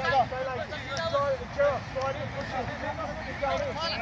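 Several distant voices of players calling and shouting to each other on the field, over a steady low background rumble.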